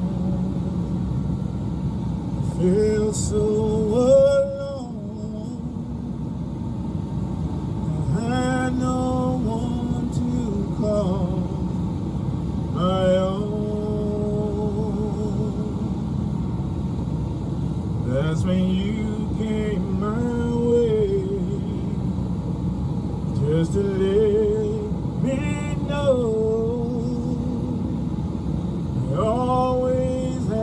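A man singing a slow gospel song solo through a PA microphone, in drawn-out phrases with long held notes, some wavering, over a steady low hum.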